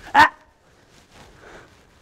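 A woman's single short, sharp "ah!" called to a horse as a correction, then only faint background sound.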